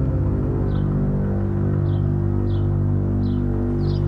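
Tense background music: a low, sustained drone with short high chirps over it.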